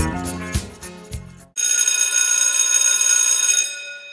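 Upbeat background music with bass and drums stops abruptly about a second and a half in. A bright electric bell then rings steadily for about two seconds and fades away.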